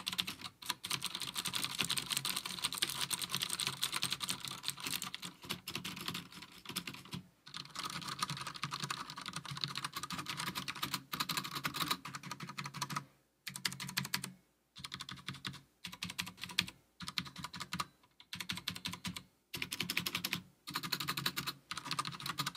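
Steady typing on two mechanical keyboards in turn: first a Das Keyboard 4 Professional with clicky, loud Cherry MX Blue switches, then a Das Keyboard 4Q with Cherry MX Brown switches, quieter, more of a bump and a thud than a click. The runs of keystrokes are broken by short pauses.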